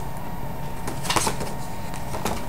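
Paper rustling as a card-stock folder is handled, with a short burst of crinkling about a second in.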